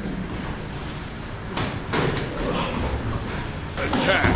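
Muay Thai sparring: sharp thuds of strikes landing on gloves and guards, the clearest a little before the middle, with shuffling steps on the gym floor.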